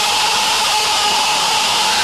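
A steady, hissing rush of noise with a single held tone underneath, a sound-effect layer in the intro of an early hardcore (gabber) electronic track.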